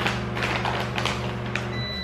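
A microwave oven running with a steady hum, which cuts off near the end with a high beep as it finishes. Over it, light taps and rustles of a cardboard cookie box being turned in the hands.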